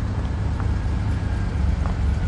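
Car engine idling with a steady low rumble.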